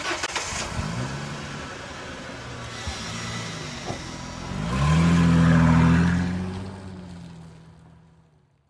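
Car engine sound effect: an engine starts and runs, then revs up loudly about five seconds in and fades away near the end.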